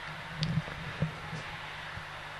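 Quiet steady low hum, with a soft short sound about half a second in and a faint tap about a second in.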